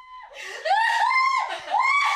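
High-pitched female laughter in a run of rising-and-falling bursts, starting about half a second in.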